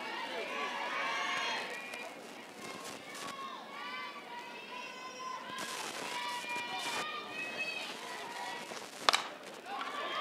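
Scattered voices calling out from the stands and dugout, then about nine seconds in a single sharp crack of a softball bat hitting the pitch.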